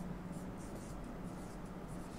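Marker pen writing on a whiteboard: a run of short, faint scratchy strokes over a steady low hum.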